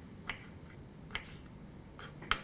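Knife slicing through cooked shrimp and striking the wooden cutting board: two short, sharp cuts under a second apart.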